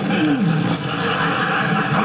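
Studio audience laughing, an even crowd sound that carries on without a break.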